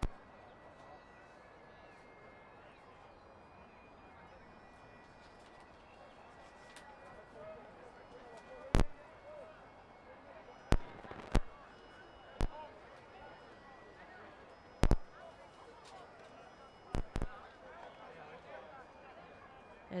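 Open-air rugby pitch ambience with faint, distant talk and shouts from players. From about nine seconds in, it is cut by several sharp, loud knocks, some of them in quick pairs.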